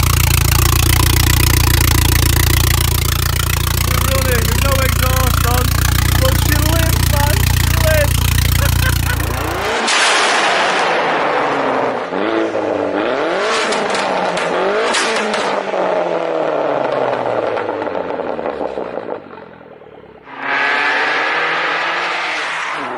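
For about the first ten seconds, a steady low wind rumble with voices under it. Then a turbocharged Vauxhall Astra VXR 2.0 four-cylinder is heard accelerating, its revs climbing and dropping several times through gear changes. After a brief dip near the end, the engine comes back louder.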